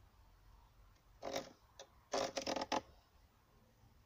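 Pencil scratching on a length of sawn timber as it is marked up against a handsaw blade: one short stroke about a second in, a brief one just after, then a quick run of strokes around two seconds in.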